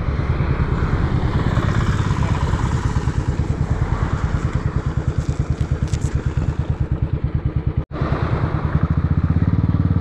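Royal Enfield Classic 350's single-cylinder engine running with an even, rapid exhaust beat while riding, with road and wind noise above it. The sound breaks off for an instant near the end and resumes with a louder engine beat.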